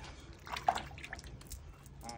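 Faint drips and small splashes of water from hands rinsed in a bowl of water, with a few light clicks and taps.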